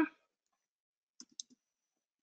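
Three faint keystroke clicks on a computer keyboard a little over a second in, as a street number is typed into a web form. Otherwise near quiet.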